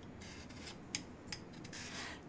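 Faint kitchen handling sounds at a counter: soft rubbing and scraping, with two light clicks about a second in and a short rustle near the end.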